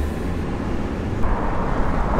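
Wind and road noise rushing past a Ford Mustang convertible driving with its top down, with the car's low engine drone underneath; a faint steady tone comes in about halfway.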